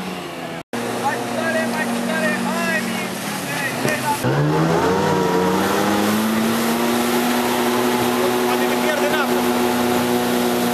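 Speedboat engine running under way, close up from aboard, with water rushing in the wake. About four seconds in, the engine revs up as the boat accelerates, its pitch rising and then holding higher.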